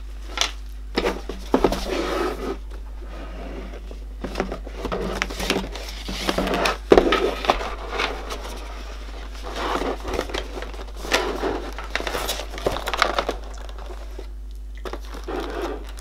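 Cardboard product box being handled and opened by hand: irregular rustling, scraping and crinkling of card and plastic packaging, with scattered sharper clicks and taps, the sharpest about seven seconds in. A low steady hum runs underneath.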